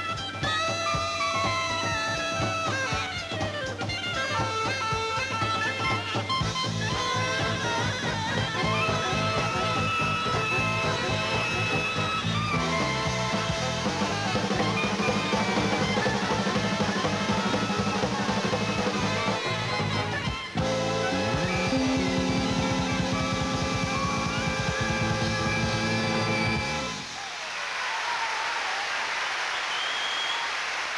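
Big-band swing with clarinet and tenor saxophone playing together over brass and drums. After a brief break it closes on a long held chord over a drum roll, the band stops about 27 seconds in, and audience applause follows.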